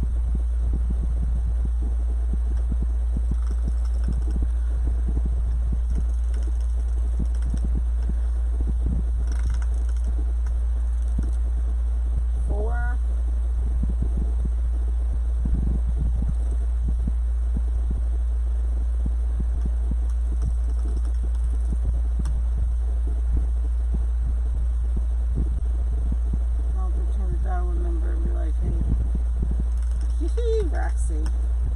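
A steady low hum with scattered soft taps and rustles as deco mesh is handled on a cutting mat.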